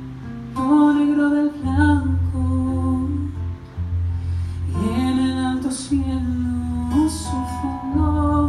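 A man singing a slow Spanish-language ballad with long held notes, accompanied by an acoustic guitar; his voice slides upward about five seconds in.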